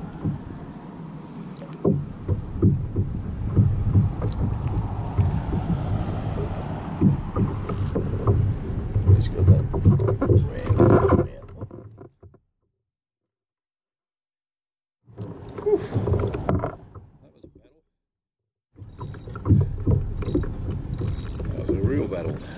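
Irregular knocks and bumps on a plastic pedal kayak with water and wind noise, as a hooked bream is played from it. The sound drops out completely twice for a few seconds.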